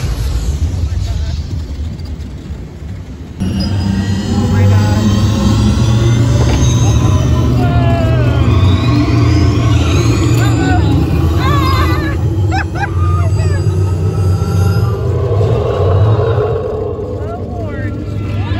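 Test Track ride vehicle rumbling along its track under the ride's onboard soundtrack music and effects during the extreme-weather sequence. The rumble and the music get suddenly louder about three and a half seconds in, and a long rising sweep comes later.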